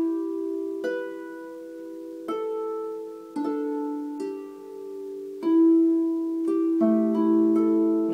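Double-strung harp played in an improvisation of fifths on the white strings: pairs of plucked notes left ringing into one another, a new pluck about every second and a few quicker ones near the end.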